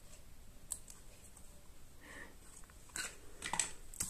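Faint handling sounds of card and paper: light rustling and taps as a die-cut paper butterfly is pressed onto a paper-flower wreath. There is a single small click early on and a short cluster of clicks and rustles near the end as the hands move across the craft mat.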